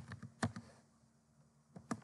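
Typing on a computer keyboard: a quick run of key clicks, a pause of about a second, then two more clicks.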